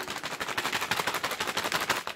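Brown paper bag shaken hard in the hand, its paper crackling in a fast, continuous run of sharp crinkles.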